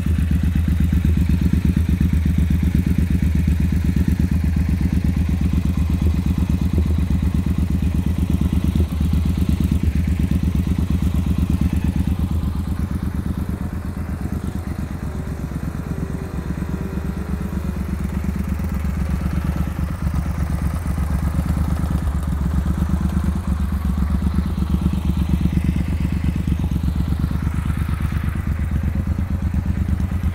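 2017 Triumph Bonneville T120 Black's 1200 cc parallel-twin engine idling steadily, a little quieter for several seconds in the middle.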